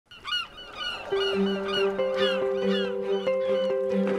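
Seagulls calling over and over in short, falling squawks, about three a second, over music whose held notes come in after about a second.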